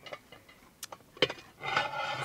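A few light clicks and one sharper knock just after a second in as a cast iron waffle iron is handled and set down, followed by a short rustling noise near the end.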